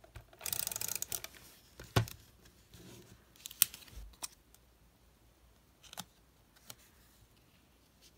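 Adhesive tape runner rolled across paper, a short rasp lasting under a second, followed by a few sharp clicks and taps as the paper square is handled and pressed onto the planner page.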